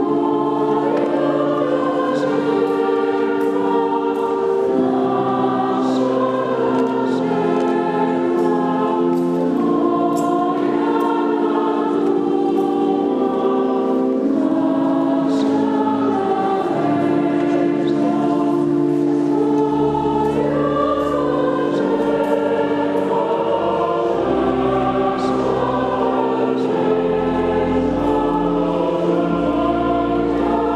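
Church choir singing a hymn in several voice parts, in long held notes that change every second or two. Low sustained bass notes join about two-thirds of the way through.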